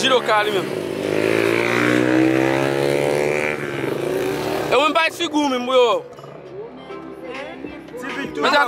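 A motor vehicle engine running for about four and a half seconds, its pitch gently rising and then easing. A voice speaks briefly near the five-second mark.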